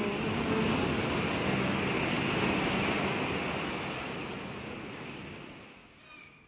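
A steady rushing noise, like surf, that fades out gradually over the last three seconds.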